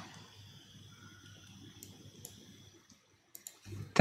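A handful of faint, separate clicks from a computer mouse and keyboard as points are dragged and a value is typed in, over quiet room tone.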